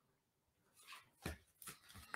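Near silence, broken in the second half by a few faint, brief rustles and taps of oracle cards being handled and laid down on a wooden table.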